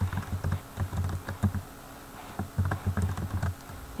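Typing on a computer keyboard: a quick run of keystrokes, a pause of under a second about halfway through, then a second run that stops shortly before the end.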